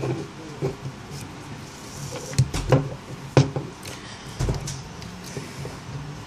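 A few sharp clicks and knocks from metal tool parts and a small circuit board being handled and fitted into a metal PCB holder clamp on a workbench, with soft handling rustle between them.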